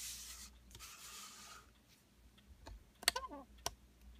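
Faint rustling and scraping of a paper easel card being handled and set upright on a craft cutting mat, followed about three seconds in by a few light clicks.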